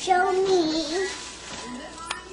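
A young girl's voice holds one long, slightly wavering high note for about a second, then makes a short rising sound near the end.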